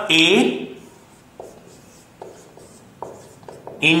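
Marker pen drawing on a whiteboard: a few short, faint strokes as a logic-gate diagram is drawn.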